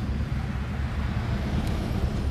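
Steady outdoor background noise: a low rumble with a faint hiss above it, typical of traffic and open-air ambience.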